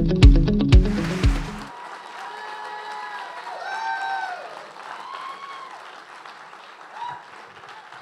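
Intro music with a steady beat that cuts off suddenly just under two seconds in, then an audience applauding with a few whoops, the applause dying away toward the end.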